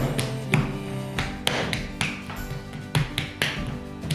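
Hands slapping and patting a soft block of porcelain clay into shape: a series of sharp slaps, roughly one or two a second, over background music.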